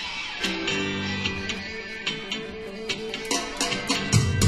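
Live guitar playing held, ringing notes in a concert hall, with sharp ticks growing stronger near the end as a ska band readies to come in.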